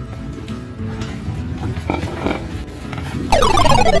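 A horse whinnying once near the end, a loud call that starts high and falls in pitch with a quavering pulse, over steady background music.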